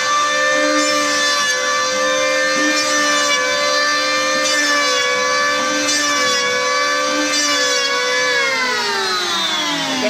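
Electric hand planer running and cutting into a wooden breast hook blank, a steady high whine that wavers slightly as the blades bite. Near the end the motor winds down, its pitch falling steadily.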